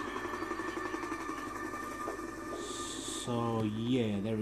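Film soundtrack playing back: music with sustained held tones. About three seconds in, a louder, low, drawn-out vocal sound comes in and bends in pitch.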